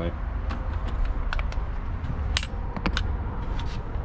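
Handling noise: several scattered light clicks and knocks over a steady low rumble, as a work light is picked up and the phone camera is moved around.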